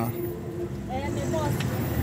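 Faint voices in the background, with a held vocal tone trailing off at the start, over a low, steady rumble of outdoor noise.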